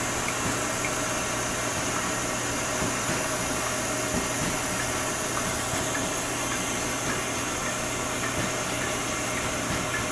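Propane torch burning with a steady hiss.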